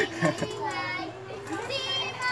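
High-pitched voices, with children calling out and chattering excitedly in short overlapping bursts and no clear words.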